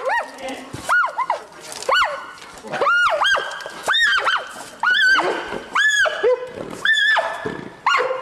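Giant pandas fighting, with a panda giving repeated high-pitched squealing calls about once a second, each rising, holding and then dropping away: a distress call from an animal under attack.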